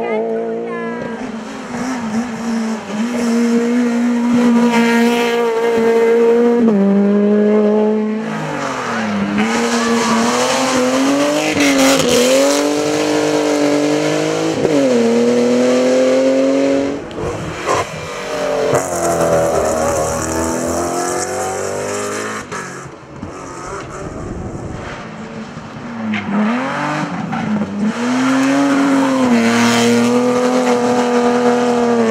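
Hillclimb racing cars' engines revving hard, several cars in turn, the pitch climbing and dropping sharply again and again through gear changes and braking for the bends.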